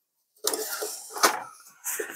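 White homing pigeon flapping its wings and knocking against the bars of a small wooden cage as it is grabbed by hand. A clattering flurry of wingbeats and rattles lasts about a second, with another short flurry near the end.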